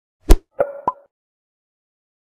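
Animated-logo sound effect: three quick percussive pops within the first second, the first the loudest and the last two with a short pitched ring.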